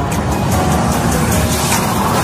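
Loud logo-jingle audio: a dense, rushing sound effect under music, steady throughout.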